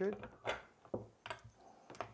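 Casino chips being set into a chip rack: four sharp clacks, spaced about half a second apart.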